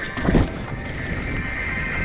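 A mountain bike landing a dirt jump with a heavy thump about a third of a second in, then its knobby tyres rolling over packed dirt with wind rushing over the helmet camera.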